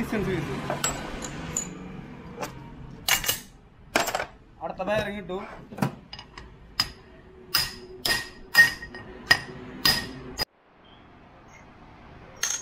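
Metal-on-metal strikes driving a ring down onto a bus differential pinion shaft held in a vise: about eight sharp, ringing blows, coming faster in the second half and stopping abruptly.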